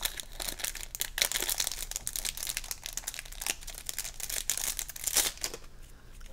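Plastic wrapping on a pack of game cards crinkling as it is peeled off by hand, in irregular crackles that are busiest in the first couple of seconds and again around five seconds in.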